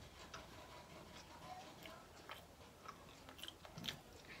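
Faint mouth sounds of someone chewing a bite of fruitcake: scattered small soft clicks over near silence, a few a little stronger near the end.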